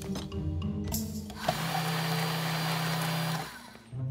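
Electric countertop blender running for about two seconds, starting about a second and a half in and cutting off abruptly shortly before the end, with a steady hum under the whirring noise.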